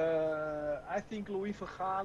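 A man's drawn-out hesitation sound, a level "ehh" held for about a second, followed by a few short halting syllables before he begins to speak, heard over a video call.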